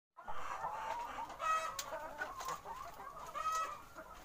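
A flock of caged laying hens clucking and calling together, many voices overlapping. Two louder, drawn-out hen calls stand out, about a second and a half in and again near the end.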